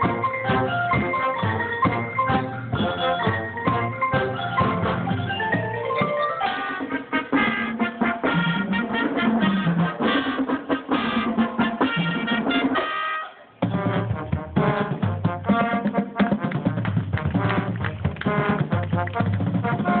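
A drum and bugle corps playing: massed marching brass horns over drums. The band stops for a moment about two-thirds of the way through, then comes back in at full volume.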